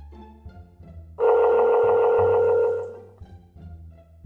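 A phone's ringback tone heard through a smartphone speaker while a call rings out: one loud ring starting about a second in and lasting about a second and a half. It plays over quiet background music of bowed strings and bass.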